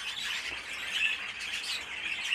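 Many cage birds chirping and chattering together, a steady, dense twittering of overlapping short calls.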